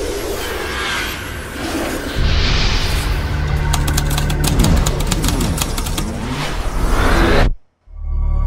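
Animated logo intro sting: whooshing sound effects over music, joined about two seconds in by a deep steady bass drone. A rapid run of sharp clicks follows in the middle, and the whole sting cuts off suddenly just before the end.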